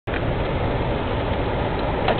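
Steady road and engine noise inside a moving car's cabin.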